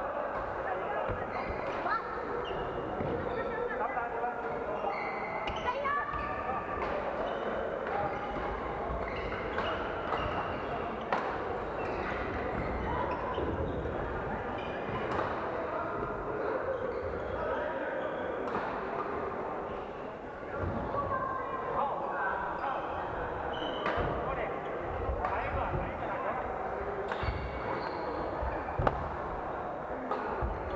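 Badminton rackets hitting shuttlecocks in a big echoing hall, sharp hits every second or few, over steady indistinct chatter of many players.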